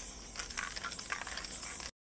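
Aerosol spray-paint can being shaken, its mixing ball rattling in quick repeated clicks. The sound cuts off suddenly near the end.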